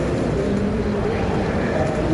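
Steady low rumble of room noise with a faint hiss.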